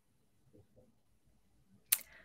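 Faint room tone, then a single sharp click just before the end.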